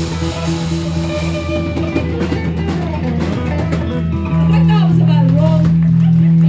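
Live rock band playing: electric guitars, bass guitar and drum kit. About four seconds in, a chord is struck louder and held ringing.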